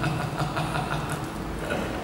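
A man laughing into a handheld microphone: a low, drawn-out laugh that eases off about a second and a half in.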